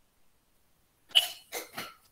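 A person coughing three times in quick succession, starting about a second in, the first cough the loudest.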